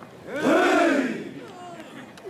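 Group of men giving a loud chorused cry in unison about half a second in, the pitch rising then falling over roughly half a second, part of a traditional Naga group chant; fainter single voices and calls follow.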